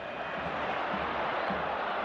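Steady crowd noise from a football stadium: thousands of fans filling the stands with an even, continuous hum of voices.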